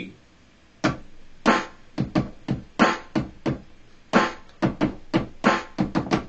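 Synth sounds triggered from Maschine controller pads through studio monitors: a quick, uneven run of about fourteen short struck notes starting just under a second in. The pads sound because they sit in group E, which matches the default root note of C3.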